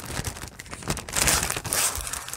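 Clear plastic wrapper crinkling as sheets of thick 12-by-12 glimmer paper are pulled out of it and handled, loudest in the second half.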